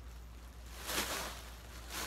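Bubble wrap rustling and crinkling softly as a body wrapped in it moves, with two brief swishes, about a second in and again near the end.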